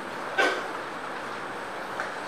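Steady room hiss picked up by the desk microphones, with one short, sharp sound about half a second in.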